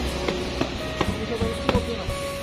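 Background music with a few plucked notes, each ringing on after it is struck.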